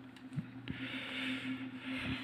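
Quiet handling noise: a couple of faint clicks, then a soft hissing rustle as the hand-held camera is moved, over a steady low hum.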